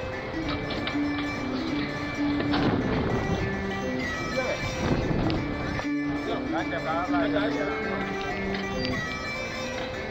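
Background music with held notes, and a voice heard for about a second after a short break a little past the middle.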